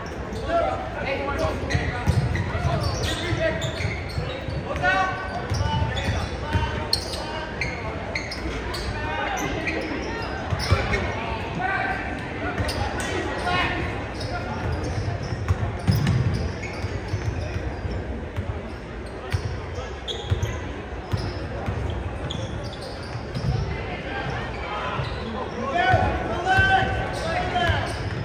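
A basketball being dribbled on a hardwood gym floor, repeated thumps under the indistinct voices of spectators and players echoing in the gym.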